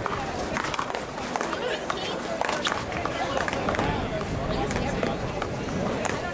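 A paddleball rally: a small rubber ball knocked back and forth by solid paddles and off a concrete wall, in sharp irregular knocks, with players' shoes running on the court. Voices chatter in the background.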